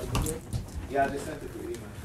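Speech only: a brief spoken "yeah" about a second in, with a little rustle as the phone is handled and moved.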